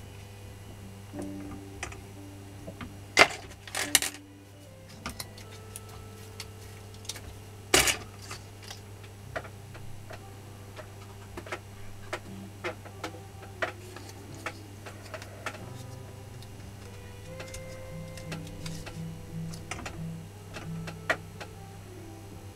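Hand work at an armature winding jig: scattered small clicks and taps, with a few sharper knocks about three, four and eight seconds in, over a steady low hum.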